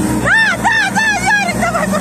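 A person shouting a quick string of about six short, high-pitched calls, each rising and falling in pitch, urging a competitor on, over the steady din of a crowded sports hall.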